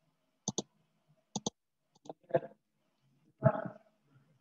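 Computer keyboard and mouse clicks, in two quick double clicks about a second apart and then a few fainter ones, followed by two short voice-like sounds, the last near the end being the loudest.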